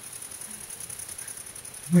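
A quiet pause: faint, steady background noise with a thin, constant high-pitched hiss. A voice begins at the very end.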